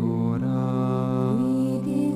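Slow sacred chant music: long held sung notes over a steady low drone, the melody stepping gently up and down.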